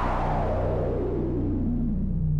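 DIY modular synthesizer: a hissing, resonant filter sweep slides steadily down in pitch from a bright high hiss toward a low rumble as a knob on the panel is turned, over a steady low drone.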